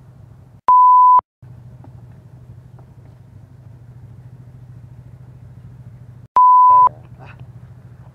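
Two loud single-pitch bleep tones edited into the audio, each about half a second long, the first about a second in and the second near the end, with the rest of the sound cut out around them like censor bleeps. Between them a faint, steady low rumble.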